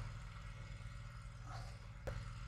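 A faint, steady low engine hum, with light handling noise late on.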